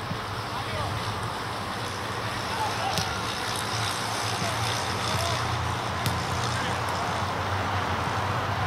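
Outdoor football training ambience: players' voices calling in the distance and a couple of sharp ball-kick thuds, about three and six seconds in, over a steady low rumble.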